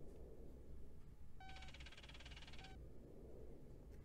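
Film computer-terminal sound effect: a short beep, then about a second of rapid electronic chattering beeps, closed by another short beep. A low steady hum runs underneath.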